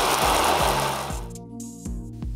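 Spray of water rinsing down a car's paintwork, a steady hiss that stops about a second in. Background music with a steady beat plays throughout.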